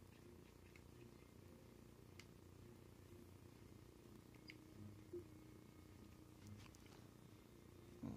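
Near silence: low room rumble with a few faint clicks.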